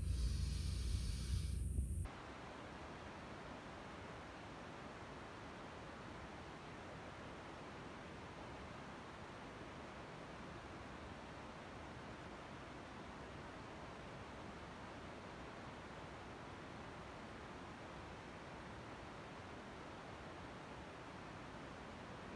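A louder rush of noise for about the first two seconds, then a steady faint hiss with nothing else over it.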